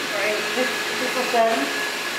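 Steady whirring of an electric motor, with a voice talking briefly over it.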